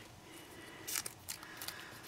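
A small folded paper slip being unfolded between fingers: faint paper rustles and crinkles, with the clearest crackle about a second in.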